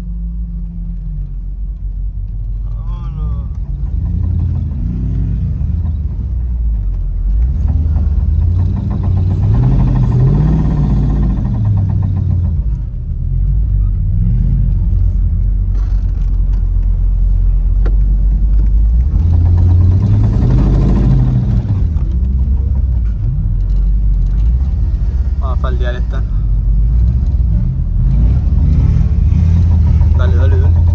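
Pickup truck engine heard from inside the cab while driving through sand dunes, revving up and falling back again and again as the truck works through the soft sand, with the biggest surges about a third and two-thirds of the way through.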